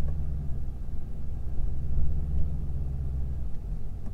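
Low steady rumble inside the cabin of a Mercury Grand Marquis reversing, its V8 engine running; the rumble eases about three and a half seconds in.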